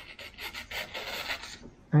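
A freshly sharpened knife edge slicing through a sheet of printer paper, a dry, uneven scratching that lasts almost two seconds. The edge is real sharp and cuts the sheet cleanly.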